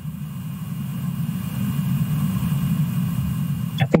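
A steady low rumble of background noise, slowly growing louder, with a word of speech just before the end.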